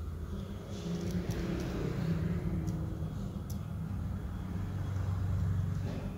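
Low engine-like rumble with a faint drifting hum, swelling about a second in and again near the end, with a few faint ticks.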